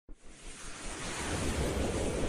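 A rushing, noisy whoosh sound effect swelling up from silence, building steadily in loudness as the intro's logo animation begins.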